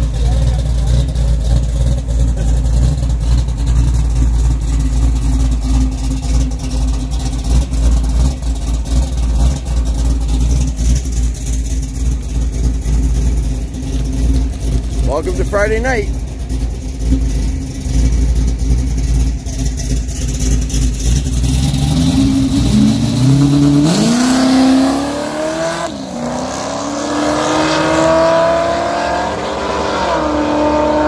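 Drag cars' engines running with a deep, steady low rumble in the staging lanes, then about 22 seconds in revving up and pulling away hard, the pitch climbing, dropping briefly at a gear change, and climbing again as they accelerate down the strip.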